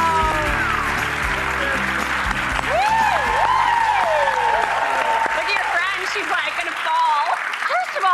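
Studio audience applauding and cheering, with shouted whoops, over upbeat music that stops near the end.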